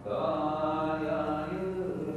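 A man chanting a Native American prayer song in long held notes; a new, louder phrase starts abruptly.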